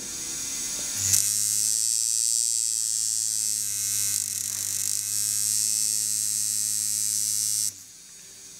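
Coil tattoo machine buzzing steadily, run off the power supply while its voltage is adjusted. The buzz gets louder about a second in and cuts off shortly before the end.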